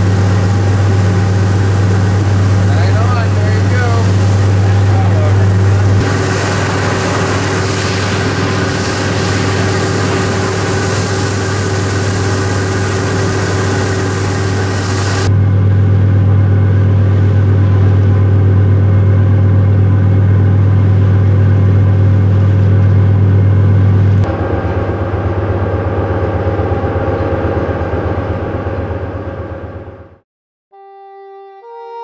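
Fishing boat's engine running with a steady low drone, with the hiss and splash of water on deck and in the wake. The sound changes abruptly about six, fifteen and twenty-four seconds in, and fades out near the end.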